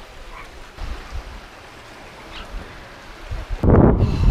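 Soft, steady wash of sea and wind. Near the end it switches abruptly to loud wind buffeting the microphone.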